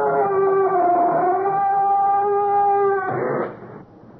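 Creaking crypt door sound effect: a long drawn-out creak with a slowly wavering pitch as the door swings shut, ending in a short thud a little after three seconds in.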